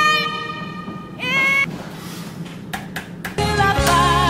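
A woman singing a power ballad with band accompaniment. A long held note with vibrato stops just after the start, and a short rising phrase comes about a second in. After a quieter stretch with a few sharp hits, the band and voice come back in loudly near the end.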